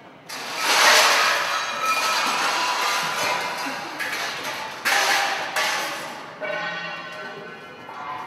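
Metal percussion in a solo percussion improvisation, struck and left to ring. A loud swell peaks about a second in, and fresh strikes follow near five seconds and again a little later, each dying away slowly.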